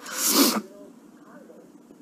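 A crying woman's sharp, breathy sob, about half a second long right at the start.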